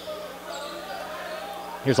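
Gymnasium ambience during a basketball game: low crowd murmur and faint court sounds under a steady low hum.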